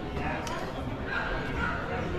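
A dog whining and yipping, thin high whines about a second in, over background talk.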